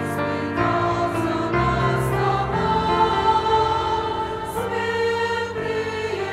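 Mixed-voice church choir of men and women singing a hymn in held chords that change every second or so.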